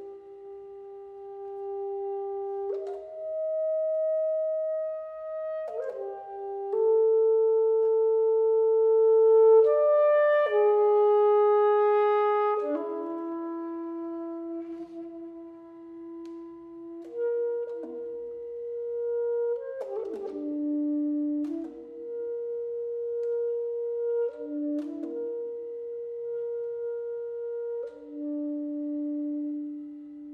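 Solo saxophone playing slow, held notes that change pitch every one to three seconds, with small key clicks between some notes. The loudest and brightest stretch comes about ten seconds in, then the line falls back to softer, lower notes.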